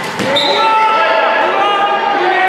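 A futsal ball is kicked with a sharp thud just after the start, amid overlapping shouts from players and spectators in an indoor gym.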